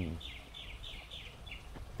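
A small bird calling in the background: a quick run of short, high, downward chirps, about four or five a second, over a faint low hum of outdoor noise.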